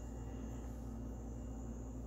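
Quiet room tone: a steady low hum with a faint hiss, no distinct event.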